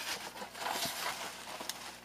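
Faint rustling and scraping from a cardboard shipping box being handled and opened, with a few light ticks.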